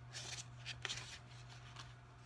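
Pages of a thick paperback book being leafed and fanned through by hand, a quick series of soft papery rustles and flicks, over a steady low hum.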